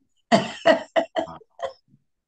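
A person coughing about five times in quick succession, the first two coughs loudest and the rest trailing off, heard over a video-call line.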